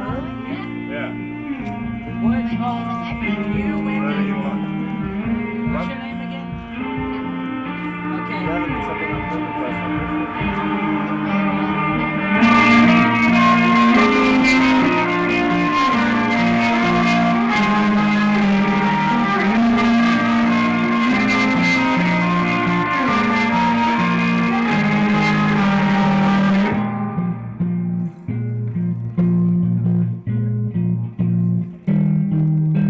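Live rock band playing a song led by electric guitar, with bass underneath. The music becomes louder and fuller about twelve seconds in, then drops back to a sparser part a few seconds before the end.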